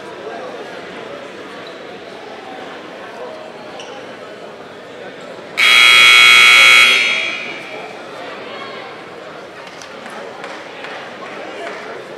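Arena scoreboard buzzer sounding once, loud and steady for a little over a second about five and a half seconds in, echoing through the gym as the timeout horn. Background murmur of voices in the hall.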